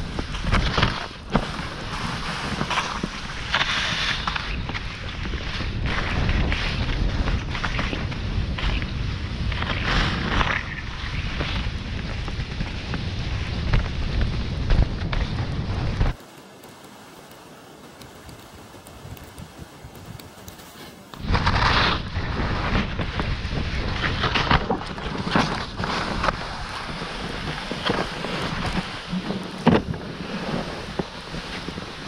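Wind buffeting the camera microphone and the GT Snoracer sled's skis hissing and bumping over snow during a fast downhill run. About sixteen seconds in, the noise drops sharply to a quiet hush with a faint steady high whine for about five seconds, then the rushing comes back.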